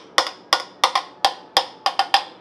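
A utensil knocking against a stainless steel saucepan as mashed potatoes are worked in it: about eight sharp, ringing knocks at a steady three or so a second.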